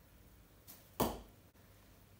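A short, tip-weighted, tasseled bo-shuriken thrown by hand hits the target board with one sharp strike about a second in.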